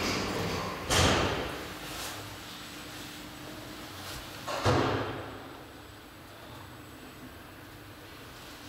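Two heavy door thuds at a Luth & Rosén traction elevator landing, one about a second in and a second just under five seconds in, each with a brief ringing tail.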